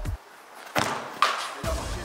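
Background music drops out, and in the gap a football is struck, with two sharp thuds about half a second apart, before the music comes back in.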